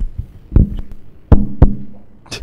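Three loud knocks of a microphone being handled, about half a second in, then twice close together past the middle, each followed by a short hum.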